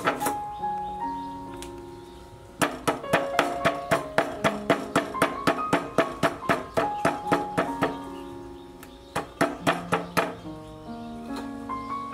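Knife chopping pieces of snake on a wooden cutting board: a long run of quick strokes, about four a second, then a shorter run near the end. Background music plays underneath.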